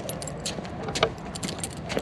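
Light metallic jingling and clicking in quick, irregular succession from a running miniature schnauzer's collar and leash hardware, over a low steady rumble.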